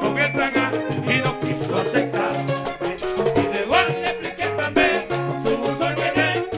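Live vallenato band playing: a diatonic button accordion carries the melody over hand drum and percussion keeping a steady beat, with a man singing.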